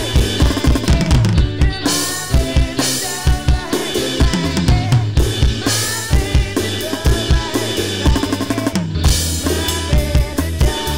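Electronic drum kit played along to a 1960s rock recording: a steady beat of kick drum and snare with rimshots, over the song's band backing.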